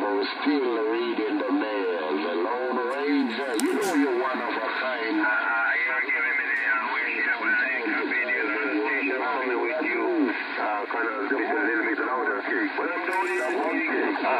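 Speech received over a radio transceiver and heard from its speaker: a thin, muffled voice with no deep or high tones, over a steady background hiss, talking on without a break. There is a short click about four seconds in.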